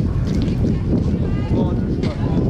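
Wind rumbling on the camera microphone, with people's voices calling in the background.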